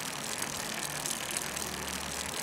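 Steady rushing tyre and wind noise of a road bicycle riding on pavement, with a steady low hum underneath.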